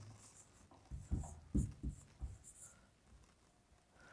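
Marker pen writing on a whiteboard: faint short squeaky strokes, with a few soft low knocks in the middle.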